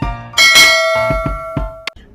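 A bell-chime sound effect for the notification bell being clicked: it rings out suddenly about a third of a second in, holds, and cuts off sharply near the end. Background music with a low beat plays under it.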